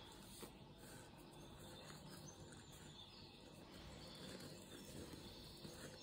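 Near silence: room tone with faint rustling of jute yarn and a crochet hook working a stitch.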